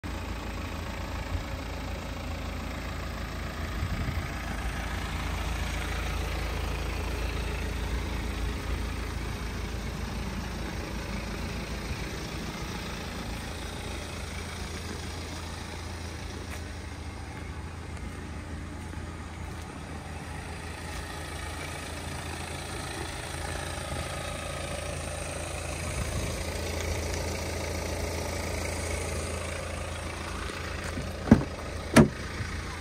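BMW X1 xDrive20d's 2.0-litre four-cylinder diesel idling steadily, a continuous low hum with light rustle on top.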